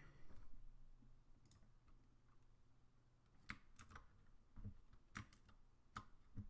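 A few faint, separate clicks of computer keys and buttons over quiet room tone, about six in all and irregularly spaced, most of them in the second half.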